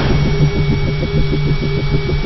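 Synthesized logo-sting sound effect: a low mechanical hum pulsing rapidly, about six times a second, under a thin steady high tone.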